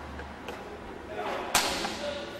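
A fast karate technique: a short rising whoosh that ends in a sharp, whip-like crack of the cotton karate uniform about one and a half seconds in, the loudest sound, fading quickly in the room's echo.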